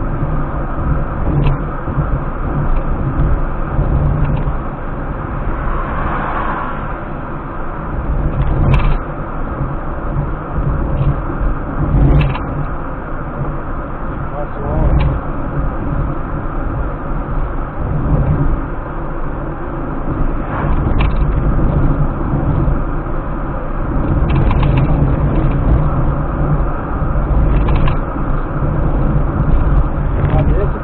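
Steady engine and road noise inside a car cruising on a highway, with a few short clicks or knocks scattered through it.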